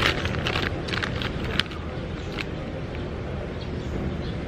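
Crinkling of a Doritos foil snack bag as a hand reaches in for a chip: a run of short crackles, the sharpest about a second and a half in, then only a steady low background rumble.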